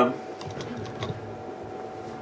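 A few light clicks of computer-keyboard typing over quiet room tone.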